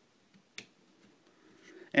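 A single sharp plastic click about half a second in, with a few fainter clicks around it, as the head of a FansProject Function X-2 Quadruple U transforming robot figure is pressed into its socket on the torso.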